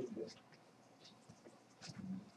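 Faint voices trailing off in a quiet classroom, then low room tone with a few soft, short ticks.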